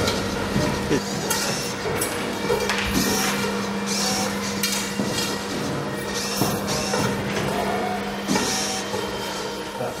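A drawing robot's motors whirr and its ballpoint pen scratches over paper, with short sharp clicks as it moves. A steady low hum runs under it and stops about eight seconds in.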